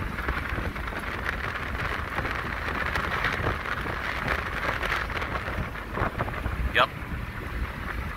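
Steady road and wind noise inside a moving car's cab: an even hiss over a low engine and tyre rumble.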